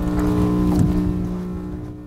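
A steady humming drone of several held tones that fades out near the end.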